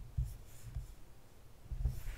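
A few faint, low, short thumps of hands working a computer at a desk as the code is scrolled.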